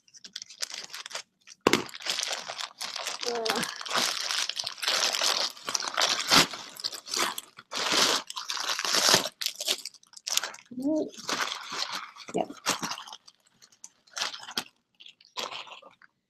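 Plastic poly mailer bag being opened and handled, crinkling and rustling busily for about eight seconds, then only a few scattered rustles.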